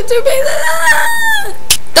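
A girl making a drawn-out, wavering, high-pitched silly vocal noise for about a second and a half, followed by a sharp click.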